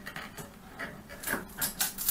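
Ceramic wall tile being pressed and worked by hand into thinset, a string of short irregular rubbing and scraping strokes that come more often near the end.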